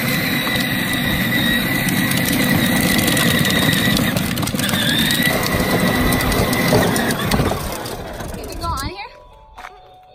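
Battery-powered ride-on toy sleigh rolling along a concrete sidewalk: its hard plastic wheels rumble and its electric motor whines steadily, fading out about eight or nine seconds in.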